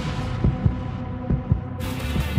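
Broadcast intro music: a low sustained drone with deep thumps in pairs, like a heartbeat, just under once a second, building suspense. Near the end a bright hissing swell comes in.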